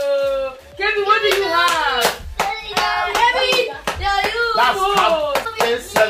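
Excited, high-pitched voices of children and adults overlapping, opening with a long held squeal, with many short sharp crackles of gift wrap being handled and torn.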